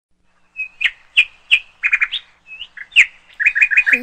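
A bird chirping: a string of short, high chirps, some sliding downward, broken by quick runs of three or four notes, starting about half a second in.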